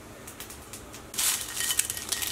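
A dry, crackling rustle of dried chiles de árbol being handled, starting suddenly just past halfway, thick with sharp little clicks.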